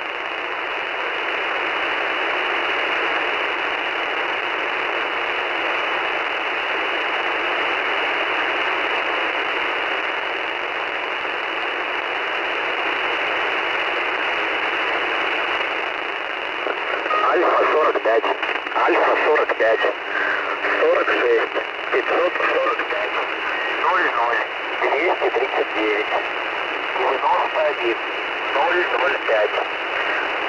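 Shortwave radio static: a steady, band-limited hiss on the voice channel of the Russian military station 'The Squeaky Wheel' (Alfa-45) on 3828 kHz. About halfway in, a voice comes through the static reading a message, a callsign and groups of numbers.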